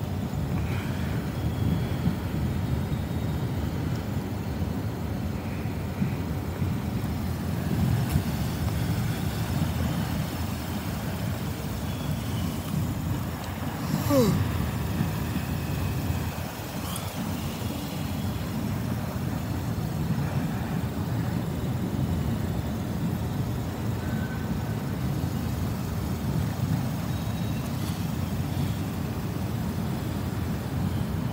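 Freight train of autorack cars rolling past, a steady low rumble of wheels on rails. About halfway through there is a click and a short tone that falls in pitch.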